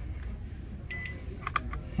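Digital multimeter switched on, giving one short high beep about a second in, followed by a few faint clicks.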